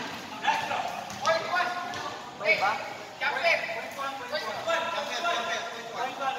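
Voices of people around a basketball court talking and calling out in short bursts, with no clear words.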